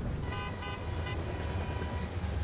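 Short horn-like toot in the sound effect of an animated segment title card, over a low steady rumble, with a faint tone lingering after the toot.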